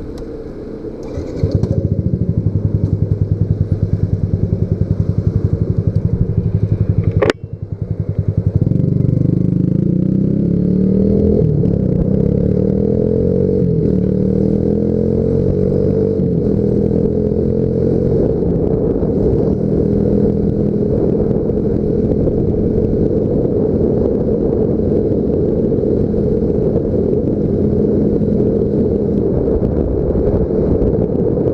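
Yamaha Factor 150's single-cylinder four-stroke engine pulling away and accelerating, louder about a second and a half in. About seven seconds in a sharp click and a brief drop in the engine note mark a gear change, after which the pitch rises again and settles into a steady cruise.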